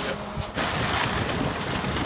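Steady rushing noise of wind on the microphone, coming in suddenly about half a second in after a quieter moment.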